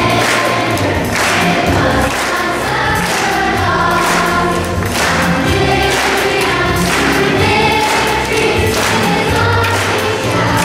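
Children's choir singing an upbeat praise song over instrumental accompaniment with a steady beat.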